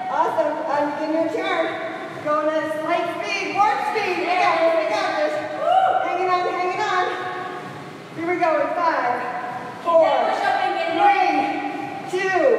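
A woman speaking continuously: only speech, with brief pauses.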